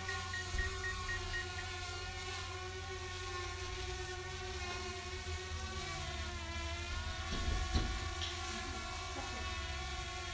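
Small quadcopter drone flying overhead: a steady whine of several pitches from its propellers, wavering slightly in pitch as it manoeuvres, with a brief low thump about three-quarters of the way through.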